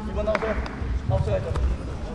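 Short calls from a voice over dull thumps of bare feet stepping on a foam taekwondo competition mat.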